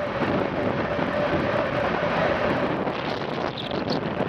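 CP 2000-series electric multiple unit running along the line, heard from an open window: steady running noise and wind rush on the microphone, with a steady hum underneath. A few short high squeaks come near the end.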